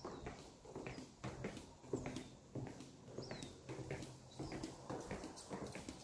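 Footsteps on a hardwood floor, faint knocks at a steady walking pace.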